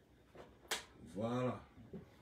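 A man's single short wordless vocal sound, its pitch rising then falling, a little past halfway, preceded by a brief sharp click.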